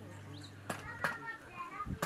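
Children's voices and chatter in the background, with a few sharp knocks.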